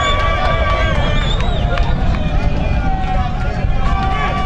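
Voices shouting and calling out across an outdoor football pitch during play, some calls long and drawn out, over a steady low rumble.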